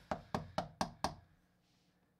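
Rapid series of about five sharp plastic taps from a rigid plastic trading-card case being handled, roughly four a second, stopping about a second in.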